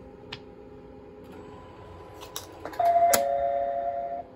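JR West Techsia SG70 simple ticket gate sounding its error alarm after a ticket was inserted face-down: a few sharp clicks, then a loud, steady two-note tone starting a little before three seconds in.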